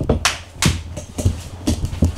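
A few scattered, sharp hand claps: two louder ones in the first second and lighter ones after.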